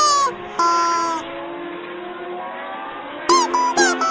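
Two short pitched calls in the first second, the first bending down at its end, over a steady haze of motorcycle engines on the track. About three seconds in, quick bright plucked-string music starts.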